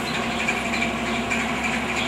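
Heavy truck with a trailer driving past, its engine and tyre noise steady throughout.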